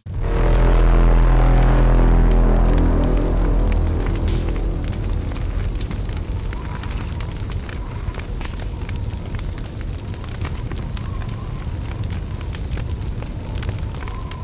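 Cinematic trailer sound design: a sudden deep boom that fades slowly into a low droning rumble, with fire crackling all through. A faint high tone comes in about halfway.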